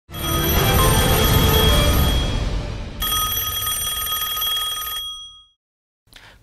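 Short TV news title jingle: music with a bright electronic ringing tone like a telephone ring over a deep bass swell. It is struck twice, the second time about three seconds in, and fades out about half a second before the end.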